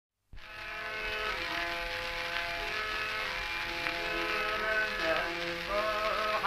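Old archival recording of Hindustani classical music in raga Tilak Kamod starting up a moment in: held notes that move in steps, with the singer's male voice bending into its first phrases near the end.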